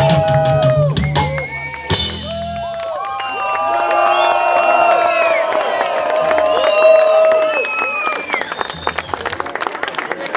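A live rock band's amplified guitars and bass hold a final chord that stops about three seconds in, followed by an audience cheering and whistling, with scattered clapping near the end.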